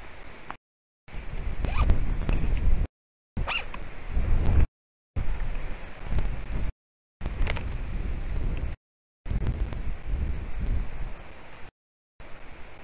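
Low rumbling wind and handling noise on the microphone, with scattered clicks and knocks. The sound comes in chunks of about one and a half to two seconds, each cut off by a short dead-silent dropout of the stream.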